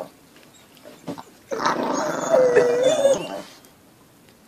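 Chihuahua growling at a larger dog. The growl starts about one and a half seconds in, lasts about two seconds with a wavering high note in the middle, then stops.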